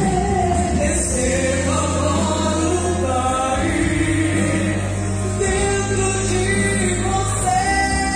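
A woman sings a gospel worship song in sustained, gliding phrases into a microphone over an instrumental accompaniment with long, held bass notes.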